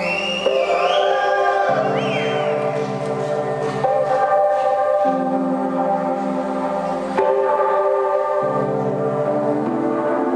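Live synthesizer music from a stage PA: sustained pad-like synth chords that change every one to three seconds, with high gliding, swooping synth tones in the first two seconds.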